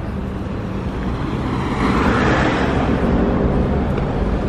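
City street traffic noise, with a passing vehicle swelling to its loudest about two seconds in over a low steady rumble.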